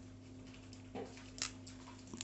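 Faint, steady low hum, then a single short crisp snap about a second and a half in: a pelargonium stem being broken off by hand to take a cutting.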